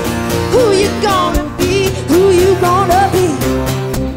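Live country-pop band playing: acoustic guitars and keyboard with a steady beat, under a female vocal line that bends up and down without clear words.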